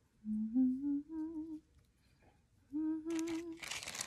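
A woman humming a short wavering tune to herself in two brief phrases. Near the end a loud crinkling rustle starts.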